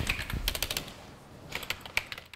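Fingers typing on a slim computer keyboard: a quick run of light key clicks that thins out about a second in, with a few more clicks near the end.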